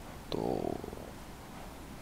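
A man's short, creaky, drawn-out hesitation word ("to"), spoken under a second in, then a pause with only faint room tone.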